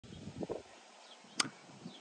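Quiet outdoor background with a couple of soft low bumps near the start and a single sharp click about one and a half seconds in.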